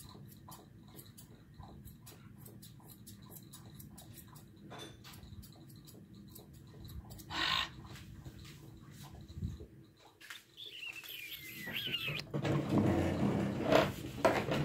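Grooming shears snipping at a standard poodle's coat, a steady run of short, light snips about three a second. A few seconds before the end comes a thin squeak that falls in pitch, followed by louder rustling and bumps.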